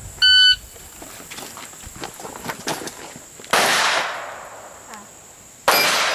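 An electronic shot timer sounds its start beep. A firearm then fires twice, about two seconds apart, and the first report echoes away for over a second.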